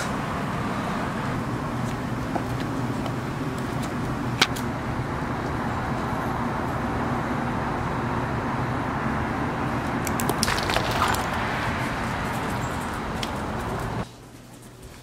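Steady outdoor background rush with a low hum underneath, like distant traffic or a running machine. A single sharp click comes about four seconds in, and a brief patch of rustling about ten seconds in. It cuts off suddenly at the end.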